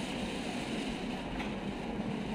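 Steady rumbling room noise in a large hall, with no clear speech.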